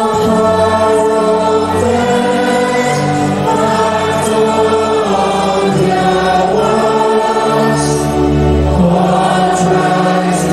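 A mixed choir singing through microphones, several voices in harmony holding long notes that change every second or so.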